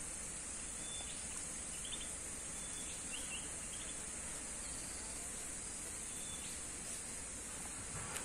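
A steady, high-pitched chorus of insects, with a few short faint chirps about two to three seconds in.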